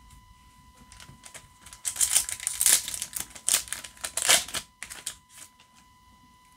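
Foil trading-card booster pack being crinkled and torn open, with cards handled: a run of sharp crackles and clicks, loudest about two to three seconds in and again around four seconds in.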